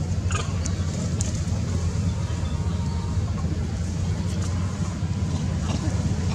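Steady low outdoor background rumble, with a couple of faint clicks in the first second or so.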